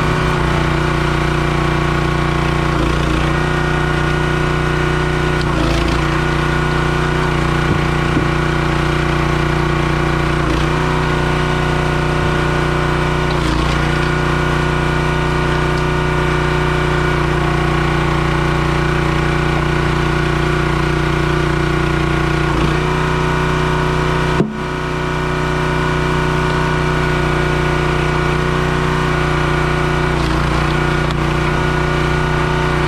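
Engine-driven hydraulic log splitter running at a steady speed while its ram pushes logs through the wedge, with wood cracking and splitting now and then. A sharp crack about three-quarters of the way through briefly dips the level.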